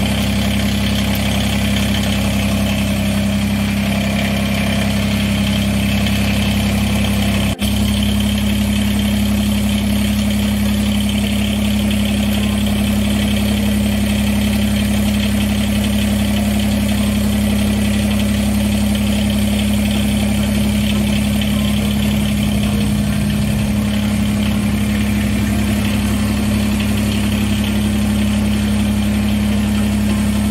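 Kubota BX23S compact tractor's small three-cylinder diesel idling steadily, with one brief break about seven and a half seconds in.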